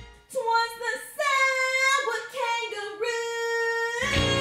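A woman singing a musical-theatre song solo, high and with little accompaniment, holding several long notes.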